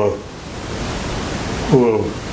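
Steady, even hiss of background noise filling a pause in a man's speech; his voice breaks in again near the end.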